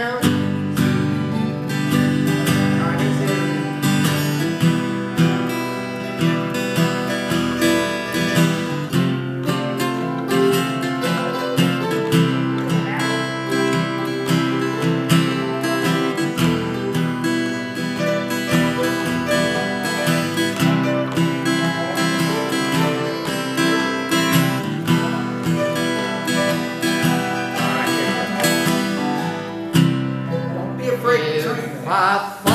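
Several acoustic guitars strumming a country song in a steady rhythm, played live as an instrumental passage without singing.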